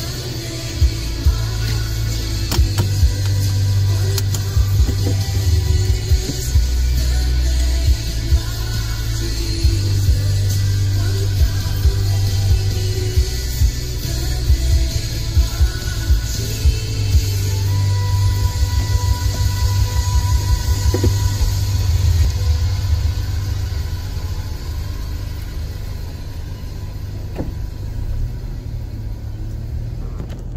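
Music with heavy bass and a steady beat playing through a car stereo, heard inside the cabin.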